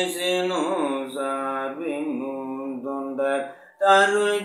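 A man chanting a devotional invocation in a sustained, melodic voice, with long held notes and ornamented turns in pitch. He pauses briefly for breath near the end, then resumes.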